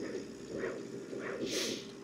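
Monport Reno 45 W CO2 laser engraver's gantry motors moving the head around the framing outline, a faint low whir, with a short hiss about one and a half seconds in.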